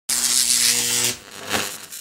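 Electronic intro sound effect: a loud hissing buzz over a steady low hum that cuts off after about a second, followed by a softer swell of noise that fades.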